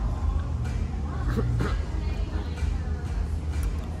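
Taproom background: music playing over steady room noise, with faint voices of other people.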